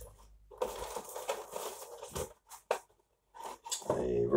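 Cardboard boxes being handled and shifted inside a cardboard shipping box: scattered rustles and light knocks, with one sharp tap between two and three seconds in.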